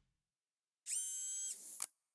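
A short whirring sound effect, like a small motor spinning, with high steady tones and gliding lower tones, lasting about a second and ending in a sharp click.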